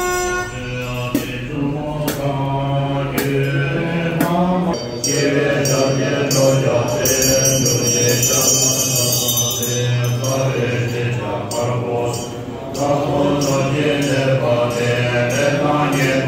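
Tibetan Buddhist monks and lay people chanting a mantra together in low, steady voices, with a ritual hand bell ringing at times over the chant.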